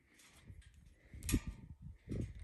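Footsteps on a steel grated staircase, a few dull steps and one sharp metallic clank about two-thirds of the way through.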